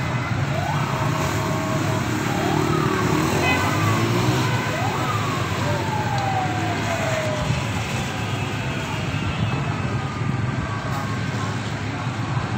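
Fire engine siren wailing in repeated sweeps, each rising quickly and falling away slowly, over the steady chatter of a large crowd.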